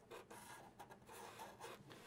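Faint scratching of Sharpie markers drawing short zigzag strokes on paper.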